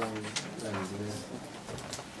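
A low-pitched voice murmuring indistinctly for about a second, then room noise with a light click near the end.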